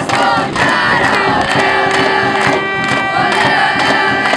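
A crowd of fans chanting and cheering together, with a drum beating along about twice a second.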